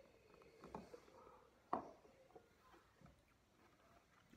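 Near silence: room tone with faint sipping sounds from a tasting glass and one soft knock a little under two seconds in.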